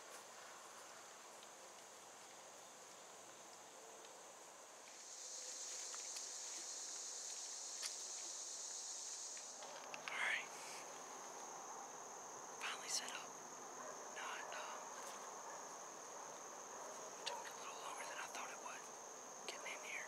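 Insects droning steadily at a high pitch, louder for about four seconds just before the midpoint, then settling back to a quieter drone.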